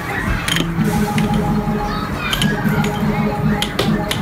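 Air hockey puck clacking sharply against mallets and the table rails several times during a rally, over steady arcade background music and game sounds.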